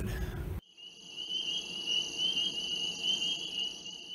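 Steady, high-pitched trilling at several pitches at once, like an insect chorus. It starts abruptly about half a second in, after a moment of room noise.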